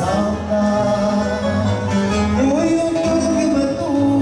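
Live fado: a male voice sings long, held notes, with an upward glide about halfway through, over a plucked Portuguese guitar and a classical guitar accompaniment.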